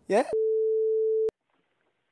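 A single steady electronic beep: one pure tone held for about a second that starts and stops abruptly with a click.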